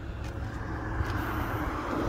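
A car driving past close by on the road, its tyre and road noise swelling louder as it nears.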